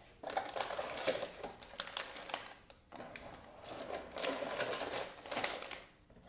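Clear plastic bags of Lego pieces being pulled out of a cardboard box: crinkling plastic with the small bricks clicking and rattling inside, in two bursts of a few seconds each.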